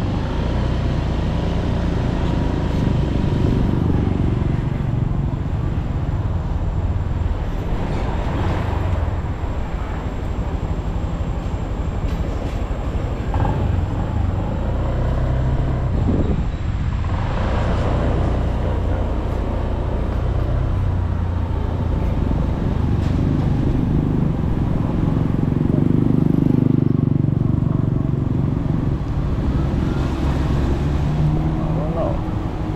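Honda scooter's small single-cylinder engine running at low riding speed, with steady road and traffic noise.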